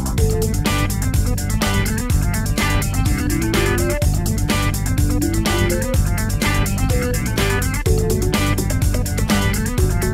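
Instrumental music with a steady drum beat and a clean electric bass line: a Fender four-string bass played without effects through a small Carlsbro 25 W amp, with short guitar-like notes on top.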